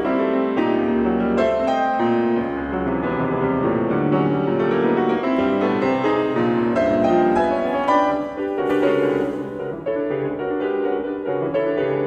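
Grand piano playing a contemporary solo piece: a continuous stream of fast, dense notes, mostly in the middle register.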